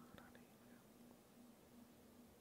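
Near silence: room tone with a faint low hum, and a faint brief whisper in the first half second.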